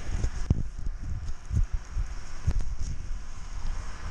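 Wind buffeting the camera microphone: an uneven low rumble, with a few sharp knocks about half a second, a second and a half, and two and a half seconds in.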